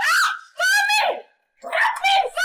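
A high-pitched voice making three short, drawn-out wordless cries in quick succession, each bending up and down in pitch.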